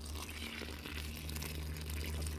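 Water being poured from a plastic container onto dry peat moss in a composting toilet's solids bin, a faint steady hiss as it soaks in.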